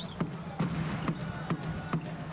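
Basketball being dribbled on a hardwood court: about five sharp bounces, roughly two to three a second, over the steady murmur of an arena crowd.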